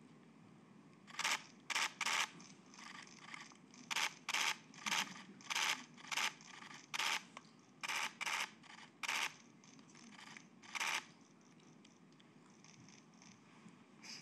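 Press camera shutters firing in short rapid-fire bursts, about a dozen bursts spread over some ten seconds.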